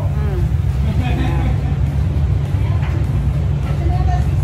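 Steady low machine rumble, the running noise of the kitchen's equipment, with faint talking over it.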